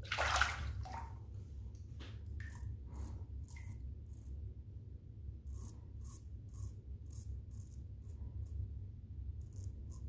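Gentleman Jon double-edge safety razor scraping through lathered stubble in short, quick strokes, two or three a second, after a brief rush of noise at the start. A low steady hum runs underneath.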